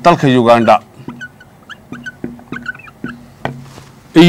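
A man speaks briefly, then a dry-erase marker squeaks in many short strokes on a whiteboard as letters are written.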